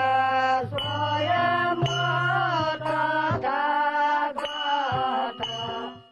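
Music score: a mantra-like chanted voice in short phrases over a low steady drone, fading out at the end.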